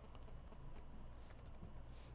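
Faint typing on a computer keyboard, a few scattered key taps as a short REPL command is entered, over a low steady hum.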